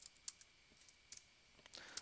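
Faint computer keyboard keystrokes: a few scattered soft clicks as a terminal command is typed.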